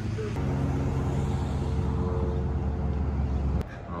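Motor vehicle engine running steadily nearby, a low drone that holds one pitch and stops abruptly shortly before the end.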